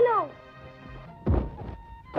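A single dull thud about a second and a quarter in, over a steady held note of background music.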